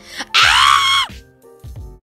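A girl's loud, high-pitched scream lasting under a second, its pitch dropping as it ends, over background music.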